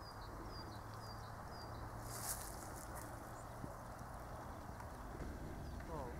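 Outdoor ambience: steady low background noise, with a small bird repeating a short, high, falling note about twice a second for the first two seconds. A single sharp click a little after two seconds.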